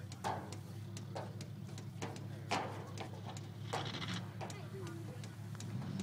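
Low, steady engine hum from a truck waiting on a dirt track, under faint voices. About five sharp clicks come at irregular intervals.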